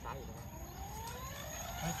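Two-blade RC autogyro being spun up by its pre-rotator: a whine rising steadily in pitch as the rotor gathers speed.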